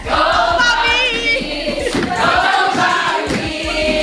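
A class of schoolgirls singing a worship song together in chorus, with sustained notes and vibrato.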